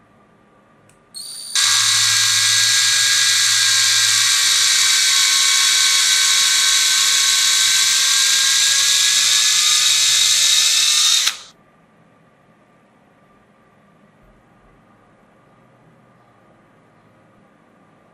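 Electric drill running as a twist bit bores down into a clear plastic rod held in a vise: it starts about a second in, runs with a steady whine that sinks slightly in pitch for about ten seconds, then cuts off suddenly, leaving quiet room tone.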